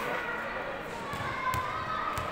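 A basketball bouncing on a gym court as a player dribbles, with one sharp bounce about one and a half seconds in.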